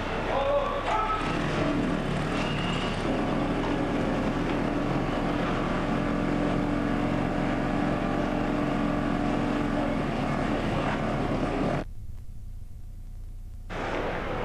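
A motor vehicle engine running steadily, with a low drone under a noisy background; near the end the sound drops to a faint hum for about two seconds.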